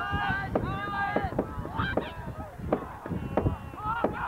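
Several voices shouting and yelling in short, high, overlapping calls, the kind heard from players and sideline spectators at a football game as the teams line up, with a few sharp knocks among them.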